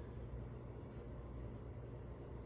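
Quiet room tone with a steady low hum; no distinct cutting sound comes through.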